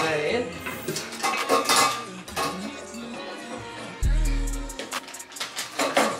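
Small toiletries and a metal tray clinking and clattering as they are handled in a rose-gold wire basket, over background music with a deep bass note about four seconds in.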